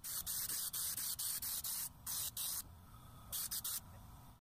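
Raptor Liner bed liner applicator gun spraying coating on compressed air: a dozen or so short, high hissing bursts as the trigger is pulled and released, with a pause of under a second before three final bursts near the end.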